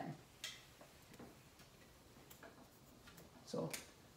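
Whiteboard eraser wiping across a marker board: a few faint, short scraping strokes and ticks spaced irregularly.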